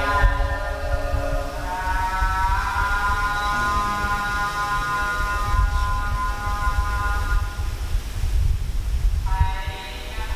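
A male voice singing or chanting a slow melodic line, holding one long note for several seconds that steps up in pitch partway through. After a short break a new phrase begins near the end, over a steady low rumble.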